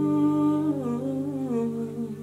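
A man humming a slowly falling melody over a sustained chord ringing on an acoustic guitar.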